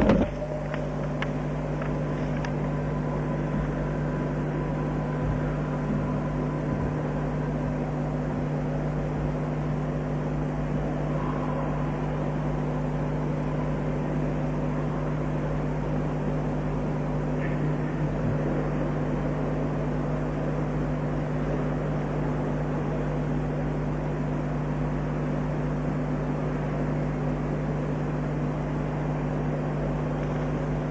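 Steady low hum and hiss of the room and recording chain, with no speech; a brief sharp knock right at the start.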